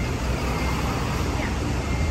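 Steady city street traffic noise: a continuous low rumble of road vehicles.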